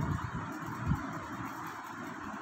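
Steady background hiss and room noise from the voice-over recording, with one brief soft low thump a little under a second in.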